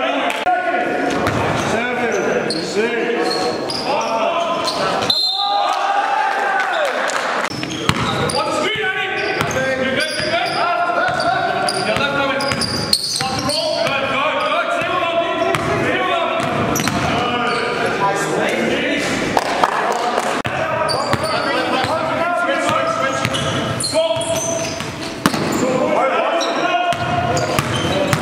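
A basketball dribbling and bouncing on a gym floor during play, the strikes echoing in a large hall, with players' voices throughout.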